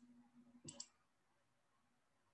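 Near silence broken by two faint, quick clicks of a computer mouse less than a second in, about a tenth of a second apart.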